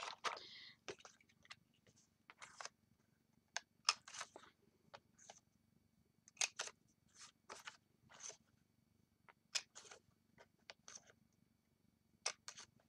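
Handheld corner-rounder punch cutting the corners of a piece of cardstock: a series of short, sharp clicks and crunches, several in quick pairs.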